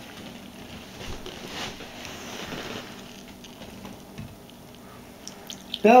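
Faint trickling and dripping of acid poured into a glass bowl of scrap circuit boards, with a few small clicks.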